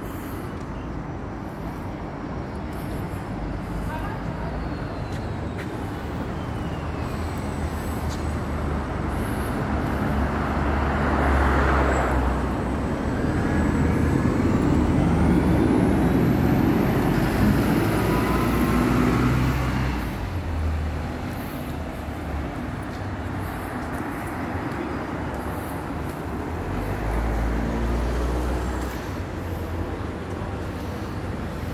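Road traffic, with a London double-decker bus passing close by: its engine rumble and tyre noise build up to the loudest point for several seconds mid-way, then drop away.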